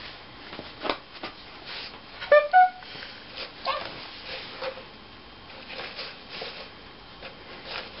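A baby's two short high-pitched squeals a little over two seconds in, among scattered light taps and knocks of toys against a cardboard box.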